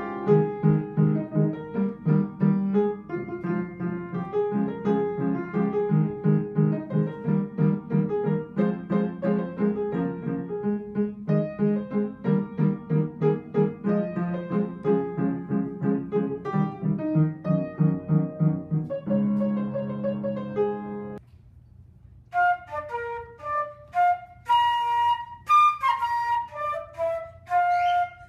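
Upright piano played with a rhythm of repeated chords. It stops about 21 seconds in, and a second later a concert flute plays a melody of separate notes.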